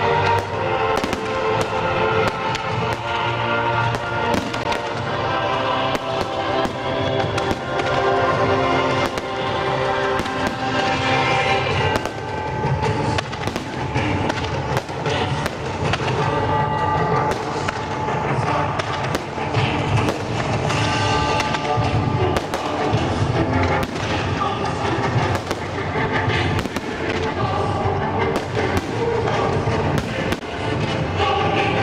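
Aerial fireworks shells bursting, with sharp bangs and crackles at irregular intervals, several a second at times, over music that plays throughout.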